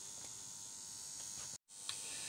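Faint steady room tone with hiss, broken by a moment of dead silence at an edit cut about one and a half seconds in, followed by a tiny click.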